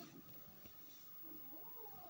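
Near silence, with a faint wavering cry in the background in the second half, like a distant meow.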